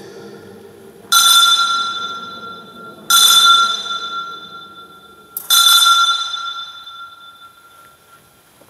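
Altar bell rung at the elevation of the consecrated host: three strikes about two seconds apart, each a clear ring of the same pitch that fades away.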